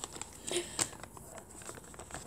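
Faint rustling of a folded sheet of paper as a small flap is peeled open by hand, a few soft crackles with a slightly louder one about half a second in.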